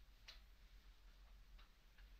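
Near silence: room tone with faint, evenly spaced ticks, roughly three every two seconds.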